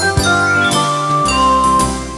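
Instrumental children's-song music with bell-like chime notes: three held notes step down in pitch over a low accompaniment.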